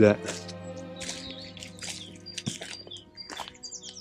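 Soft background music of sustained tones, with small birds chirping over it and a quick run of high chirps near the end.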